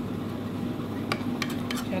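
A whisk stirring thick chocolate truffle cream as it cooks in a nonstick pot, with a quick run of about five sharp clicks of the whisk against the pot about a second in.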